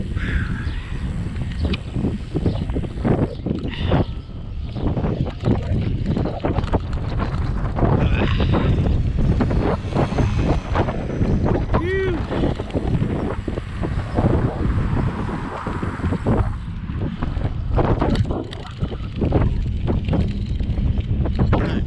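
Wind buffeting the microphone of a camera on a moving bicycle: a loud, gusting low rumble.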